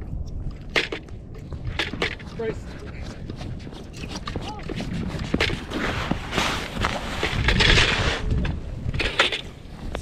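Footsteps crunching on snow-covered pond ice, coming closer and loudest a couple of seconds before the end, among scattered knocks and clicks.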